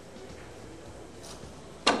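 Quiet hall background, then near the end a single loud sharp crack: the 9-ball break, the cue ball driven into the racked balls and scattering them.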